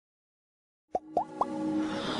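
Silence for about a second, then three quick rising plops a little over a fifth of a second apart. They lead into a building musical swell, the opening of a logo intro jingle.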